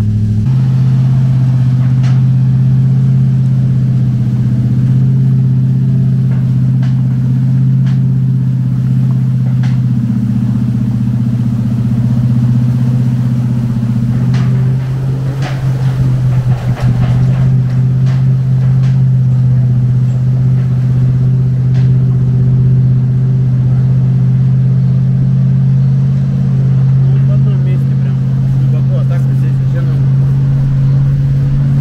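A motor vehicle engine running steadily, a loud low hum that holds one pitch throughout, with a short patch of clattering about halfway through.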